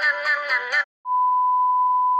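A synthesized singing voice repeating one syllable cuts off just under a second in; after a brief gap a steady, single-pitched test-tone beep near 1 kHz starts and holds, the kind played over a 'Please stand by' screen.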